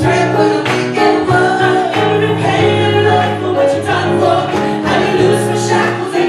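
A gospel vocal group of men and women singing live into microphones, backed by a band with a drum kit keeping a steady beat under sustained low notes.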